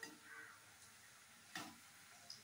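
Faint clinks of a metal slotted spoon against a steel wok while stirring frying onion pakoras: one at the start and a louder one about a second and a half in.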